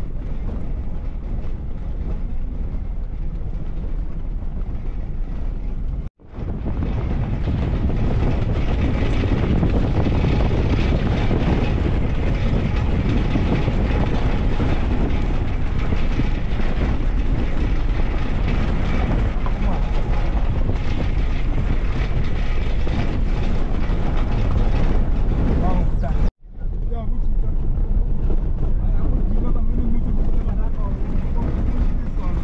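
Vehicle engine and tyre noise on a dirt road with wind on the microphone: a steady rumble heavy in the low end, broken twice by brief dropouts, about six seconds in and near the end.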